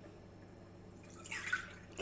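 Quiet room tone with a low steady hum, and a short soft hiss of noise about a second and a half in.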